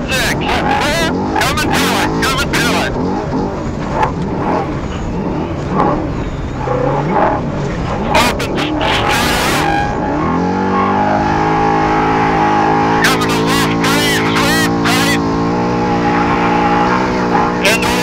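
Off-road race trophy truck engine heard from on board under hard driving, its pitch rising and falling for the first ten seconds. From about ten seconds in it holds a steady note. Repeated sharp bursts of rattle and rushing noise cut through it over the rough ground.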